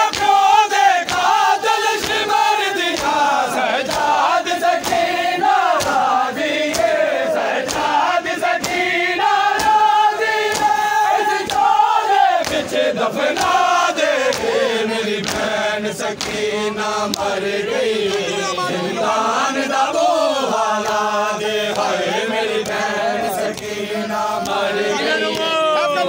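A crowd of men chanting a noha, a Shia lament, with a steady rhythm of hands striking chests in matam.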